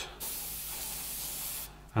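Airbrush spraying paint in a steady hiss that starts just after the beginning and cuts off shortly before the end.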